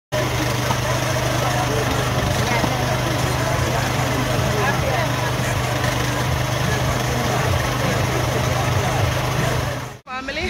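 Busy market ambience: many voices talking over one another, with a steady engine hum underneath.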